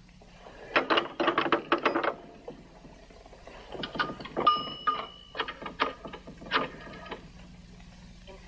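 Rotary telephone being worked: a quick run of about ten clicks about a second in, like a dial returning, then a second stretch of clicking with a brief bell-like ring partway through.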